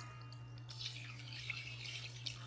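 Liquid poured in a thin stream from a glass measuring cup into a stainless steel mixing bowl of eggs and sugar, the splashing starting about a second in.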